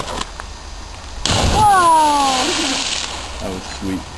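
A person jumping off a rock ledge into deep quarry water: a sudden splash about a second in that fades away over two seconds, with a person's voice calling out, falling in pitch, over it.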